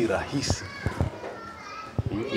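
Children's voices at play with brief high-pitched talk, and a few light knocks about half a second and a second in.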